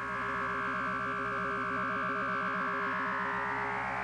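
Eerie electronic synthesizer music: held drone tones, some warbling quickly up and down, with a higher tone that rises near the end.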